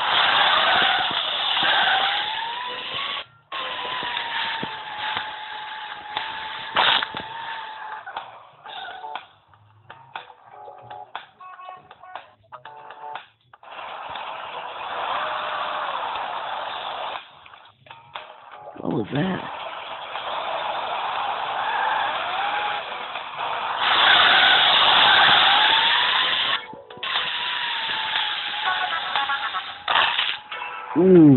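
Video game audio: a small vehicle's engine tone rising and falling, with stretches of crashing noise and several brief dropouts.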